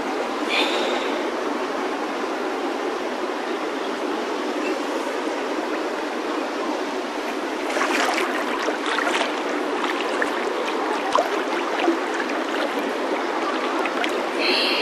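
River water rushing and splashing around a camera held at the surface by a swimmer in a swift current, sped up to double speed. It is a steady rush, with sharper, louder splashes from about eight seconds in.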